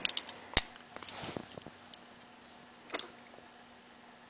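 Light clicks and taps from an iPhone being handled and its screen tapped: a sharp click about half a second in, a few faint ticks after it, and another click near the end.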